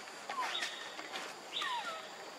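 Young macaque giving two short, high calls that fall in pitch: a brief one about half a second in and a longer one near the end.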